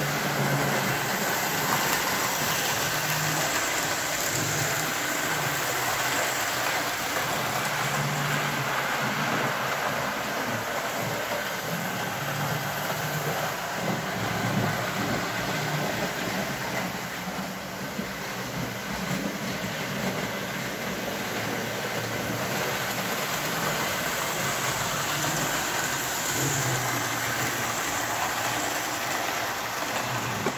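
Model train running on the layout's metal track: a steady rumble of wheels and motor.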